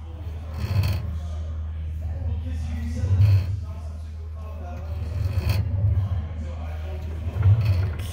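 Beechcraft V-tail Bonanza elevator control cables and pushrods moving through the tail as the elevator control is worked up and down, heard as about four separate strokes over a steady low hum.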